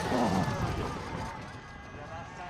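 A skeleton sled's steel runners rushing over the ice as it passes close by, the noise fading away over the two seconds.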